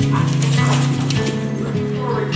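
Background music with steady held notes, over dogs moving about on a hard laminate floor with a few faint claw clicks.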